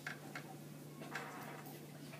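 Quiet classroom room tone: a steady low hum with a few faint clicks and taps.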